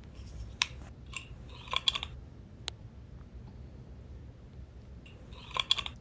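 A few faint, scattered clicks and small mouth-like ticks over a low steady hum, with no speech.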